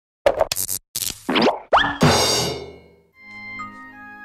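Cartoon show intro sting made of sound effects: a quick run of short pops, two rising boing glides, then a bright crash that fades out over about a second. Soft background music with held notes begins near the end.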